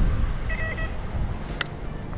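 XP Deus 2 metal detector giving a short burst of high beep tones about half a second in as the coil passes over the dug hole, signalling that the target is still in the hole. A low rumble runs underneath, and a single sharp click comes near the end.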